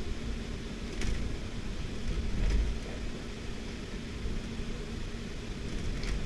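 Low, steady background rumble with a faint swell about two and a half seconds in, and a couple of faint small clicks.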